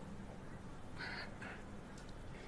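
Faint background hum, with two short faint calls, the second briefer, about a second in.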